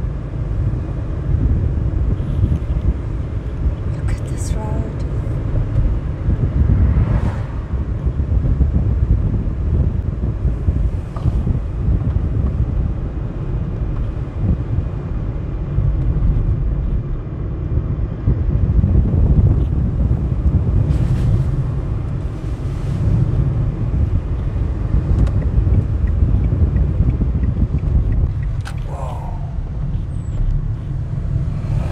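A car driving along a road, heard from inside the cabin: a steady low rumble of tyres and engine.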